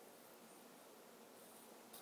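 Near silence: faint, steady room-tone hiss.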